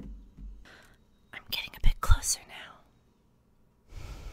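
Breathy, close-microphone whispering from a woman's voice, with two sharp pops about two seconds in.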